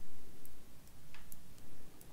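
Metal knitting needle tips clicking lightly against each other a few times as purl stitches are bound off, with thin sharp ticks a fraction of a second apart.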